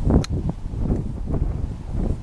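Wind buffeting the microphone in irregular low gusts, with one sharp click about a quarter second in.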